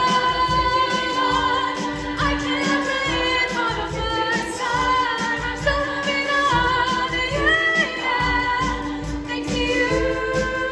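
Women's choir singing a pop song, accompanied by grand piano and a drum kit keeping a steady beat.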